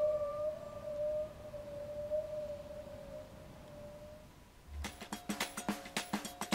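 Bowed waterphone: one long, slightly wavering eerie tone that fades away about four seconds in. A drum beat starts near the end.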